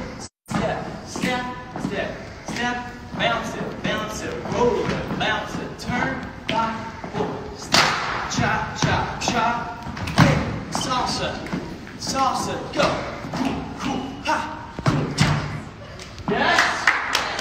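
Voices talking over repeated thuds of dancers' feet stomping and landing on a wooden dance floor in a large, echoing hall. The audio drops out for a moment just after the start.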